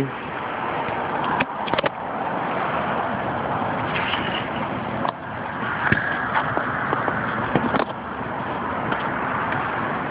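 Rooftop packaged air-conditioning unit running with a steady noise, heard through the cabinet the camera rests on, with a few knocks of handling as the camera is set down.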